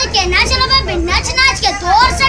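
A boy's voice in short, rising and falling phrases, with no drum beats.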